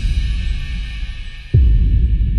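Dramatic background score: a deep bass boom that drops quickly in pitch and holds on as a low rumble, with a fresh hit about one and a half seconds in.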